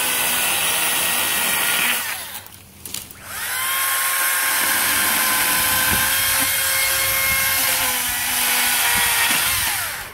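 Makita XCU03PT1 36-volt cordless chainsaw with a brushless motor, cutting into a small tree near its base. It gives a steady electric whine that runs about two seconds and stops. About a second later it spins up again, runs for about six seconds, and winds down at the end.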